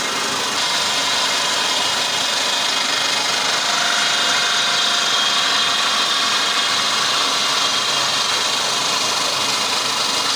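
Large water-cooled circular saw blade grinding steadily through a big block of black granite, a continuous high-pitched cutting noise with water spraying off the blade.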